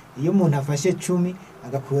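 A man speaking, in short phrases with brief pauses.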